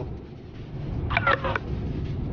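Steady low rumble of a car driving, heard from inside the cabin. About a second in there is one short, meow-like cry that rises and falls in pitch.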